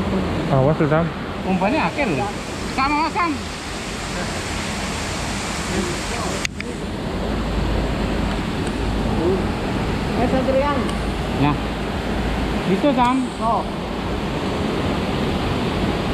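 Steady rush of a fast-flowing water channel, mixed with traffic noise from the road on the bridge overhead. A low rumble swells in the middle, and there is one sharp click about six seconds in.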